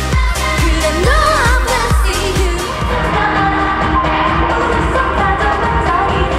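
K-pop dance song with female group vocals over a steady bass drum beat, the sung line gliding up and down about one to two seconds in.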